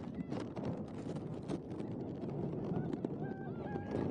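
Open-air football pitch ambience: a steady noisy background with scattered clicks. Near the end come three or four short high-pitched calls.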